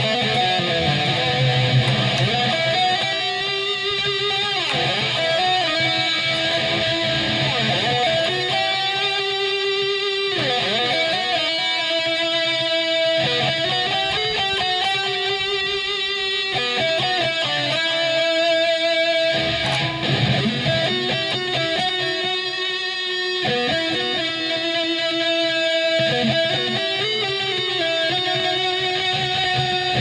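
Cort X-6 VPR electric guitar with HSH pickups, played through a distorted amp sound: a lead line of long, held notes with vibrato, a few of them swooping down in pitch. The notes ring on with long sustain.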